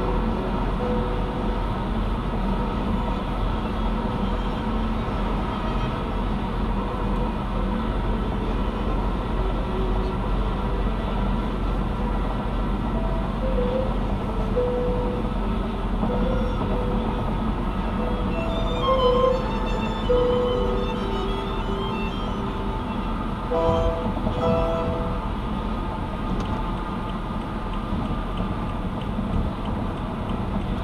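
Steady road and engine noise inside a car cabin at highway speed, with music playing over it in short notes and a busier, higher passage about two-thirds of the way through.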